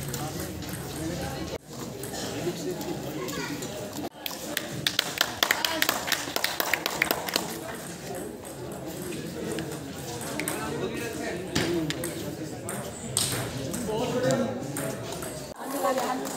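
Table tennis ball clicking sharply off bats and the table in rallies, a quick run of clicks a few seconds in and scattered ones later, over voices chattering in a large hall.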